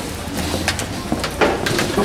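Footsteps going down a stairwell: a few steps and scuffs on the stairs over a low, steady rumble.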